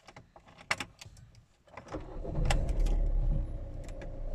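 A few sharp clicks, then the car's 77 kW engine starts about two seconds in, briefly louder before settling into a steady idle.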